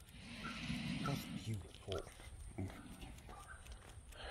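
Faint breathing and snuffling sounds from a dog on a leash, loudest in about the first second, with quiet mumbled speech.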